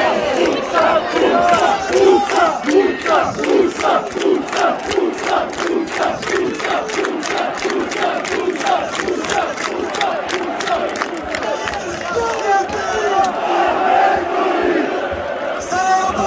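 Stadium crowd of football fans chanting in unison to rhythmic clapping, about three claps a second; the clapping fades out near the end while the chant goes on. It is an ovation for a goal.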